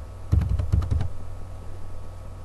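Computer keyboard being typed: a quick run of about five or six keystrokes in the first second, then stopping, over a steady low hum.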